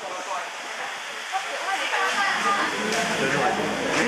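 Background chatter of several people talking at once around dining tables, over a steady hiss.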